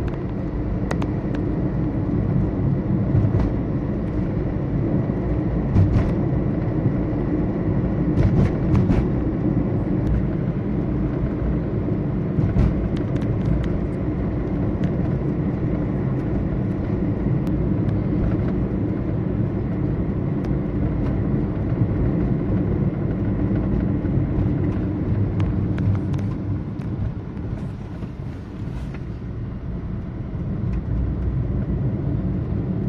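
Road and engine noise heard from inside a moving car's cabin: a steady low rumble, with a few brief clicks and rattles along the way.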